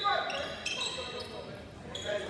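Basketball play on a hardwood gym floor: a ball bouncing and short high sneaker squeaks about halfway through, with voices echoing in the hall.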